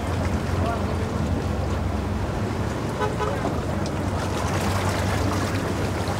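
An engine idling steadily with a low, even hum, while people talk faintly in the background.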